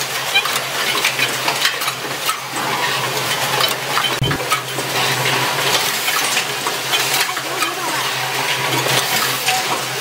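Automatic micro switch assembly machine running: a continuous clatter of small metal clicks and clinks with a hiss, over a steady low hum. A single low thump about four seconds in.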